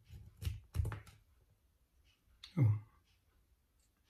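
Small hand cutters snipping through a sealed paint tube: a few sharp clicks and crunches within the first second or so.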